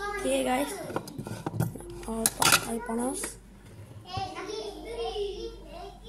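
Children's voices chattering with the clatter of kitchen dishes and utensils, including a few sharp clinks in the first half, as a meal is prepared in a bowl.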